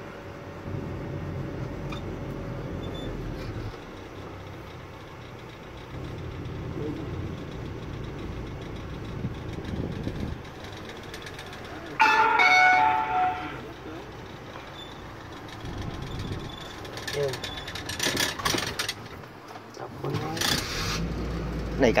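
Engine and road noise heard inside the cabin of a car driving slowly. About halfway through there is a short, loud tonal sound, and there is brief talking near the end.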